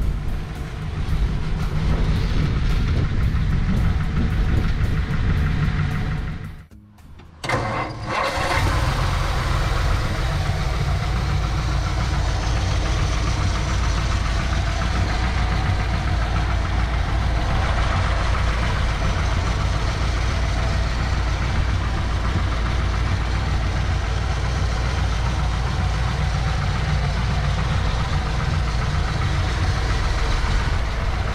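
A 1953 Ford Crestline Sunliner's 239 cubic inch flathead V8 running as the car drives slowly; the sound cuts out briefly about a quarter of the way in, then the engine starts and settles into a steady, even idle.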